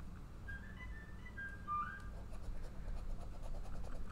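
Soft whistling: a brief run of short notes stepping up and down in pitch, in the first half.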